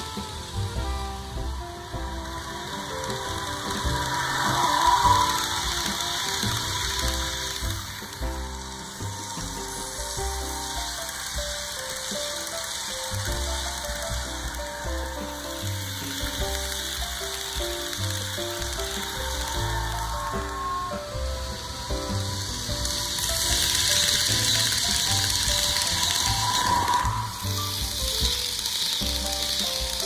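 Background music over an HO-scale model passenger train running on the layout, its wheels clattering and clicking along the track with a steady hiss. The train noise grows louder near the end as the coaches pass close by.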